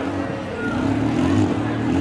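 Demolition derby vehicle engines running steadily under load as the wrecked vans shove against each other.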